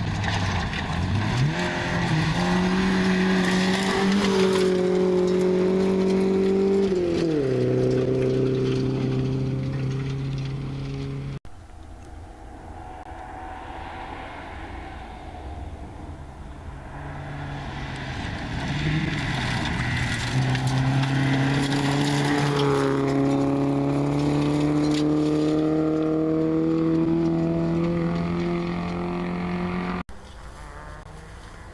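Rally car engines at full throttle on a gravel stage. A Volvo 240 accelerates hard to a high, steady note, then shifts up with a sudden drop in pitch about seven seconds in. After an abrupt cut about eleven seconds in, a second car's engine builds up and holds a high note, climbing slowly in pitch as it comes closer.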